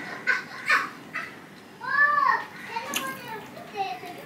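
Fingers mixing rice on a steel plate give a few short, sharp clicks and squishes. About halfway, a child's high voice calls out once in the background; this is the loudest sound.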